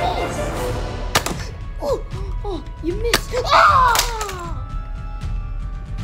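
Two sharp Nerf blaster shots about two seconds apart, heard over background music, with short vocal yelps between them and a loud falling cry just after the second shot.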